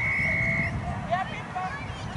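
A single steady, level whistle lasting under a second, followed by scattered short chirps and faint distant voices.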